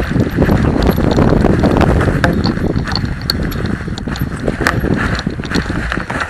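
Mountain bike clattering down a rough, rocky singletrack: a dense, irregular run of knocks and rattles from the tyres, chain and frame over stones and dry leaves, with a heavy rumble from the shaking camera mount.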